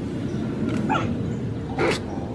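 Giant panda cubs tussling on dry leaf litter, with a short squeaky call about a second in and a louder, sharp cry near the end.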